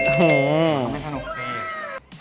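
A drawn-out cat meow, wavering up and down in pitch, over background music.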